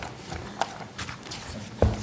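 Papers being handled at a meeting table: faint rustling with a few light knocks, and one louder thump near the end.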